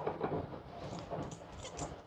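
Thick gravy pouring from a plastic jug onto a plate of food: faint, irregular soft splattering and dribbling.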